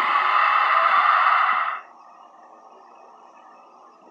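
A loud, breathy hiss from a person's voice, held for under two seconds and then cut off, followed by faint room noise.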